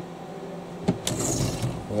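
Spring-loaded caravan fly blind being worked in its window cassette: a click about a second in, then a brief rattling whirr as it runs.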